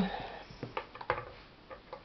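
A few faint, scattered clicks and taps of hands handling a homemade bucket-housed sugar grinder; its motor is not running.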